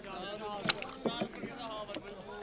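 Several men's voices talking and calling among the market boats, with one sharp knock about two-thirds of a second in and two softer knocks just after the middle.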